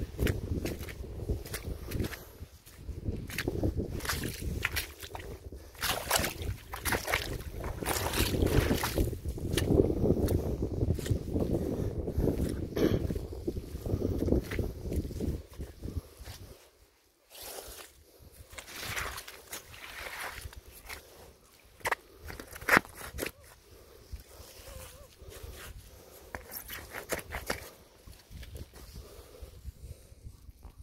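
Footsteps in trainers squelching through wet mud on a leafy path. A low rumble runs under the steps for the first half and drops away about sixteen seconds in, leaving quieter, sharper steps.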